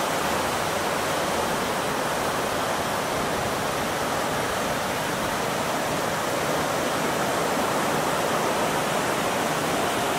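A steady, even rushing noise that holds at one level throughout, with no bird calls or other distinct sounds standing out.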